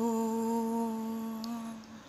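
A woman's voice holding one long, steady low note with closed lips, a hum, unaccompanied, that slowly fades out near the end.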